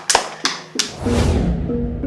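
A few last hand claps, then outro music comes in about a second in: a deep bass swell with short pitched notes over it.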